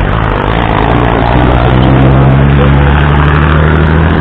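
A motorcycle engine running close by, a steady low hum that swells to its loudest around the middle, over city traffic noise.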